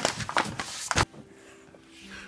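Handling knocks and clicks from a phone being carried while someone walks, then quieter with a faint steady hum.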